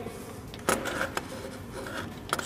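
Handling noise from a small boiler pressure gauge being handled and set back against its board: one sharp knock a little under a second in, then a couple of lighter clicks and rubbing.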